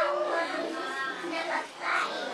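A high voice singing a short phrase, with a few held notes.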